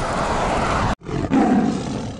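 Steady roadside traffic and wind noise that cuts off abruptly about a second in, then a loud roar sound effect for the cartoon-dinosaur intro card, fading out near the end.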